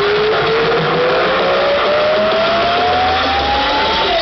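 Electronic dance music build-up played loud through a concert sound system: a single synth sweep climbs steadily in pitch throughout, over a dense wash of sound, as the track rises towards its drop.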